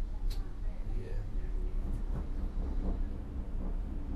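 Low, steady rumble inside a gondola cabin riding down its haul cable, with one sharp click about a third of a second in.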